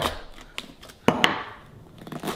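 An apple corer working into a raw cauliflower over a wooden chopping board: quiet handling and cutting noise, with one sharp knock about a second in.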